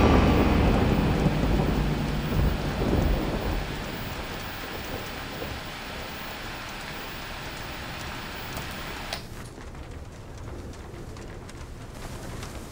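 A deep rumble fading away over the first few seconds under a steady rain-like hiss. About nine seconds in, the hiss drops to a quieter, duller hiss.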